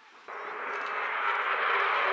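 Engine noise of a Sukhoi Su-27UB jet fighter's twin turbofans in flight, cutting in suddenly about a quarter second in and growing louder.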